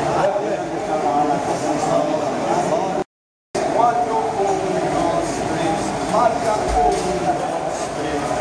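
Several people's voices talking over each other in a crowded room, at a steady level. A little past three seconds in, the sound cuts out completely for about half a second.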